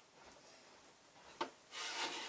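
Quiet room with a short knock about a second and a half in, then a rubbing rustle near the end as a person takes hold of a desk chair.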